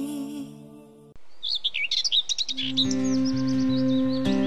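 Small birds chirping in quick, rapid calls as the previous song fades out, with gentle acoustic guitar music coming in underneath the birdsong about two-thirds of the way through.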